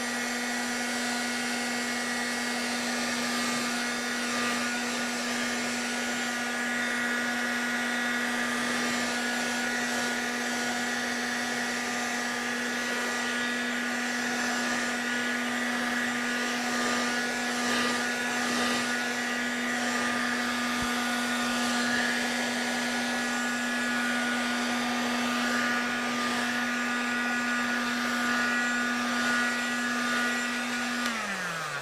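Handheld heat gun running steadily, a constant motor hum under a rush of blown air, drying wet acrylic paint on paper.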